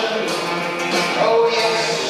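A man singing a song into a microphone over musical accompaniment, holding a long note about halfway through.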